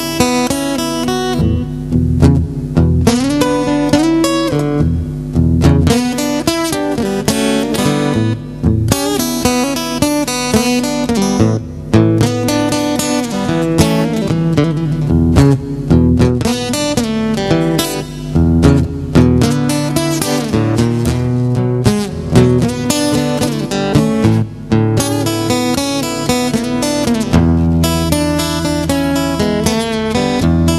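Solo acoustic guitar playing the instrumental opening of a blues song, with busy picked and strummed notes over strong bass notes.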